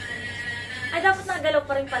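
A woman's high laugh starting about a second in, in quick pulses that fall in pitch, over music playing in the background.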